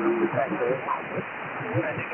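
Single-sideband voice on the 15-metre amateur band through a receiver's narrow filter: overlapping voices of stations calling the DX station, over a steady hiss of band noise, thin and telephone-like.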